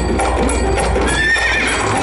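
A horse's hooves clip-clopping, with a horse whinnying about a second in.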